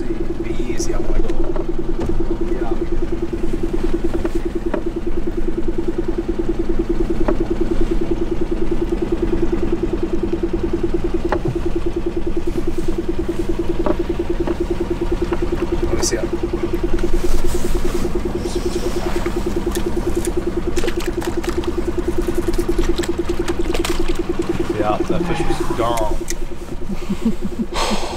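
A boat motor running steadily at low speed, an even hum with a fine rapid pulse that holds without change.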